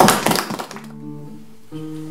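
Acoustic guitar strummed hard for about half a second, then its chord notes left ringing more quietly.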